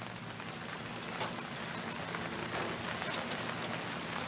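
Burgers and hot dogs sizzling on a gas grill: a steady, crackling sizzle.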